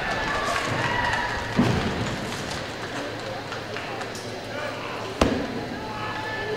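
Large sports-hall ambience: indistinct voices carry through the room, with two sharp thuds, one about a second and a half in and a louder, sharper one just after five seconds.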